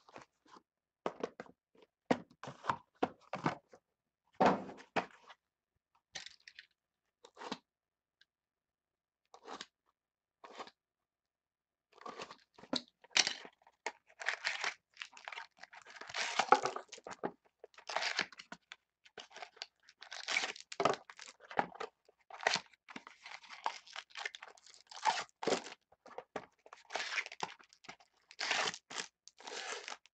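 Trading cards and card boxes being handled with scattered short taps and slides. After a near-quiet stretch in the middle comes a long run of crinkling and tearing as foil card-pack wrappers are ripped open and crumpled.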